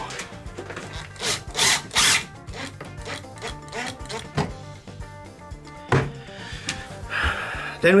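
Makita 18V cordless impact driver running in a few short bursts about a second or two in, driving a screw into cedar wood, over background music.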